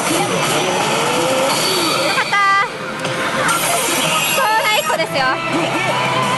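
Pachislot Hokuto no Ken Tensei no Sho machine in battle mode, playing electronic effects and character voice lines over the constant loud din of a pachinko parlor. A bright electronic tone sequence sounds about halfway through.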